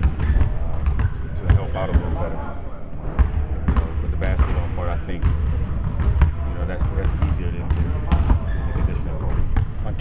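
Basketballs bouncing on a gym floor in the background, irregular thuds, under a man talking.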